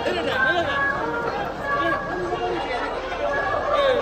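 Crowd of voices talking and calling over one another, with music of long held notes behind them.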